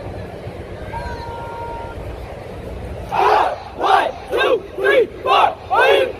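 A group of voices shouting together in unison six times, about two shouts a second, starting about three seconds in, over a steady low background hum.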